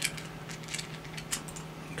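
A few faint, irregular clicks of a computer mouse being clicked to step through video playback, over a low steady hum.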